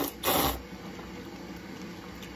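Slurping noodles up from a bowl of soup, with a loud slurp just after the start, then a quieter stretch.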